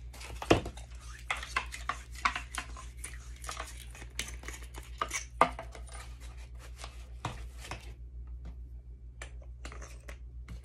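Hands handling a rechargeable flashlight, its battery and plastic packaging over a cardboard box: a run of small clicks, knocks and rustles, with sharp knocks about half a second in and about five and a half seconds in, thinning out to a few faint clicks near the end. A steady low hum underneath.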